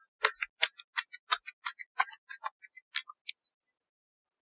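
A deck of oracle cards being shuffled by hand: a quick, uneven run of light card clicks, about four or five a second, that stops a little after three seconds in.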